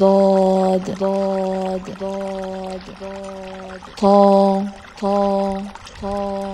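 A voice put through a voice changer, held on one flat pitch, repeating the Arabic letter name ḍād (ض) six times at about one a second; the first call and the one about 4 s in are the loudest.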